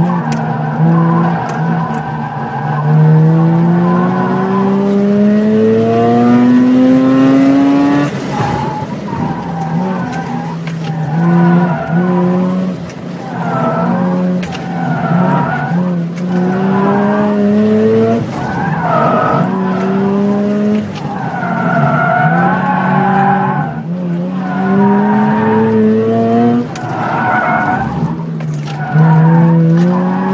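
Car engine revving hard through an autocross run, its pitch climbing under acceleration in one long pull about two seconds in, then rising and falling repeatedly as the driver accelerates and lifts between cones. Tires squeal through the turns, heard from inside the car.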